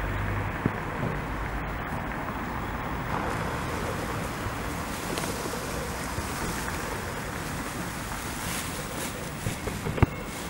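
Steady rushing outdoor noise of wind on the microphone over distant street traffic, with a few faint knocks near the end.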